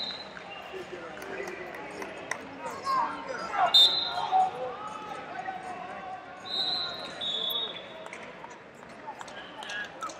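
A referee's whistle blows once, short and loud, about four seconds in, and twice more, at slightly different pitches, around seven seconds. Behind it is the echoing hubbub of a wrestling hall: voices and scattered short knocks.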